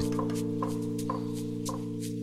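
Background music holding a steady chord, with irregular sharp taps over it: a red-bellied woodpecker pecking at a branch.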